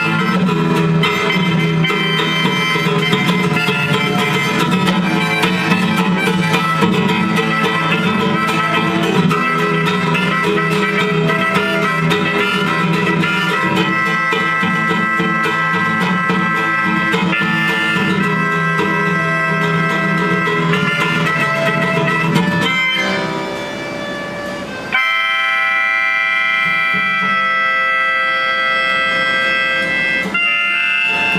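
Live acoustic music: a harmonica played through a microphone over strummed acoustic guitar and fiddle. The music thins and drops in level for a couple of seconds near the end, then comes back in abruptly with long held harmonica notes.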